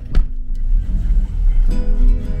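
Car driving slowly over a rough dirt track, heard inside the cabin: a heavy low rumble from the bumpy ride, with a sharp knock of a jolt just after the start. Background music plays over it, clearer near the end.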